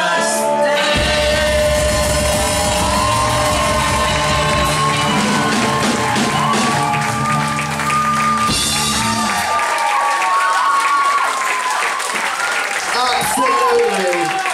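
Live rock band holding out a final chord with sustained sung notes; the bass and low end cut out about nine and a half seconds in, leaving loose vocal lines over audience clapping and cheering.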